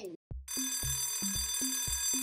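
Alarm-clock bell sound effect ringing steadily from about half a second in, signalling that the quiz countdown timer has run out. Under it runs background music with a repeating low bass line.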